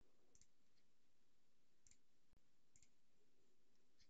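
Near silence with three faint computer-mouse clicks.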